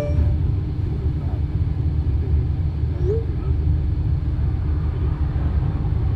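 Steady low rumble of a moving car's road and engine noise, heard from inside the cabin.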